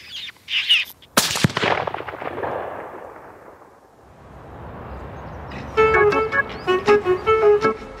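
A single rifle shot about a second in, its report rolling away and fading over the next few seconds. Music with plucked notes comes in near the end.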